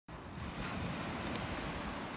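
Beach ambience: wind buffeting the microphone with a low uneven rumble over a steady wash of surf.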